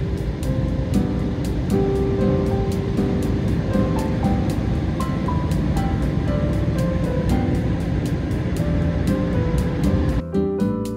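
Background music with a steady beat, over the loud, even rushing of an automatic car wash's air dryer blowing water off the car, heard from inside the cabin.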